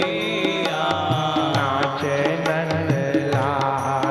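Hindi devotional bhajan music: male voices singing a devotional melody over sustained instrumental accompaniment, with a steady percussion beat of about three strikes a second.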